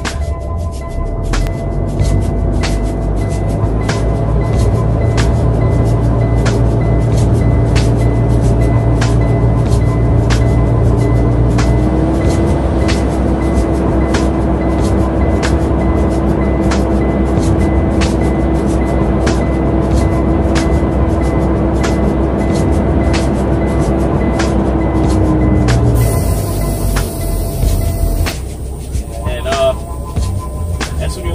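Hip-hop music with a steady beat.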